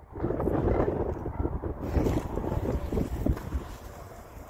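Wind buffeting the microphone: a gusty low rumble that rises and falls in strength.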